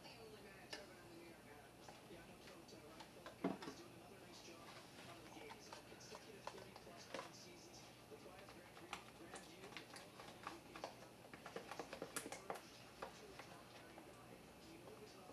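Faint clicking and scraping of a spoon stirring two-part epoxy resin and hardener in a plastic cup, with one sharper knock about three and a half seconds in and the clicks coming thicker near the end.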